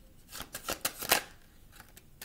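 Tarot cards being handled and shuffled by hand: a quick run of card snaps and flicks from about half a second in, loudest just past a second, then quieter.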